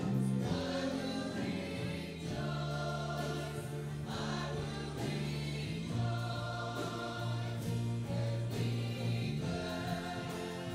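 Live worship band playing a slow song with guitars and singing, its long held chords changing every few seconds.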